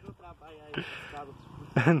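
Men's voices in conversation: quiet, low talk, then a short, louder spoken word near the end.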